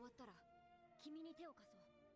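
Near silence, with a faint high-pitched voice speaking briefly about a second in: anime dialogue playing quietly in the background.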